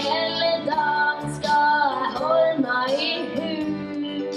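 A group of young singers singing into stage microphones, a lead voice bending and sliding in pitch over steady lower notes.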